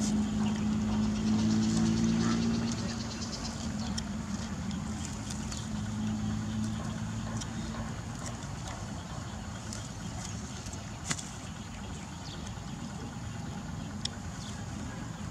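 A steady engine hum that fades away over the first several seconds, with one sharp click about eleven seconds in.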